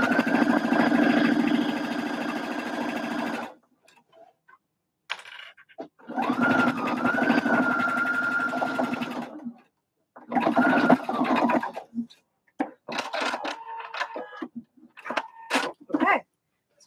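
Electric domestic sewing machine stitching a seam in bursts: two runs of about three and a half seconds each, a steady motor whine over rapid needle clatter, then a short run about ten seconds in.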